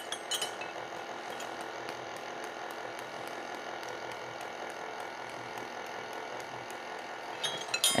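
Faint clinks of metal measuring spoons on a ring, over a steady room hum.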